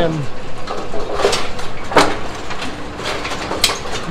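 Brunswick Model A pinsetter running through its cycle: a steady mechanical running noise from the gearbox and rake linkage, with a few sharp metallic clanks, the loudest about halfway in.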